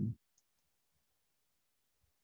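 Near silence with a few faint computer-mouse clicks, the clearest about half a second in, after a man's word ends at the very start.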